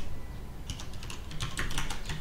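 Computer keyboard being typed on: a quick run of separate key clicks that starts about two-thirds of a second in.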